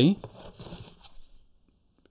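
Faint rustling and crinkling of toys and packaging being handled as a toy is lifted out of a box, dying away to near silence.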